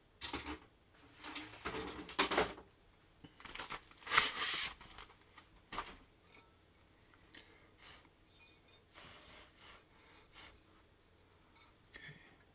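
Small hard keyboard parts being handled by hand on a desk: a series of clicks, clatters and rustles, loudest around the second and fourth seconds, then a run of lighter ticks.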